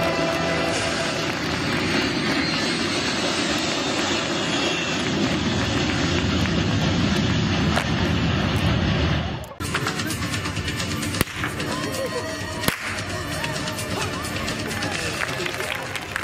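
Loud backing music for the face-changing act that cuts off abruptly about nine and a half seconds in, followed by a quieter stretch with two sharp whip cracks about a second and a half apart.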